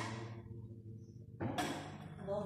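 Live experimental sound performance: a steady low drone with even overtones, broken by sudden bursts of noise. One burst fades away over the first half-second, and a second one hits about one and a half seconds in.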